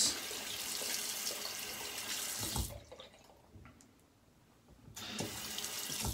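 Bathroom sink tap running as lather is rinsed off a Karve aluminium safety razor. The water shuts off about three seconds in and comes back on about five seconds in.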